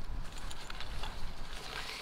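Zip on a cordura fabric rod case being pulled open: a quick run of small clicks and fabric rustle over a low rumble.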